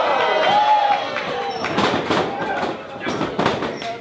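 Voices calling out in a hall over a wrestling match, with a few sharp slaps and thuds of wrestlers' bodies and strikes in the ring: two close together around the middle and another later on.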